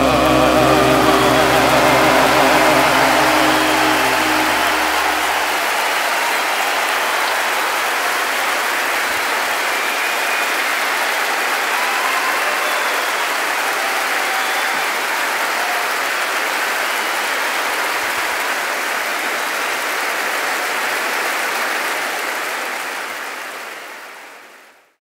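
Concert audience applauding loudly as the band's final held chord rings out. The chord stops about five seconds in, leaving steady applause that fades out near the end.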